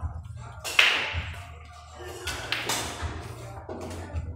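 Pool cue striking the cue ball with a sharp crack a little under a second in, followed about a second and a half later by several clicks of pool balls knocking together and against the cushions.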